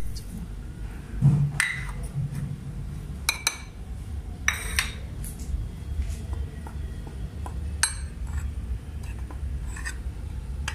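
A metal spoon clinking and scraping against bowls as spices are tipped into a bowl of flour and stirred in, with a few sharp clinks spread through, over a steady low hum.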